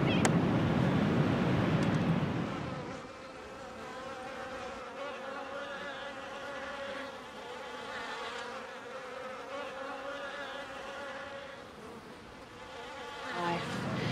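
Insects buzzing, several wavering buzzes overlapping; a louder rushing noise fills the first two seconds or so, then the buzzing goes on more quietly.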